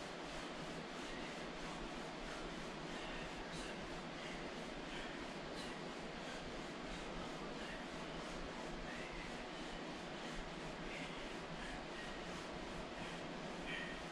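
Steady background hiss with faint, scattered rustling.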